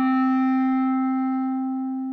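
Solo clarinet holding one long low note, steady in pitch and slowly fading.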